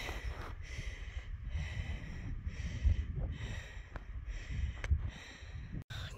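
Wind rumbling on the microphone, with a person breathing close to it.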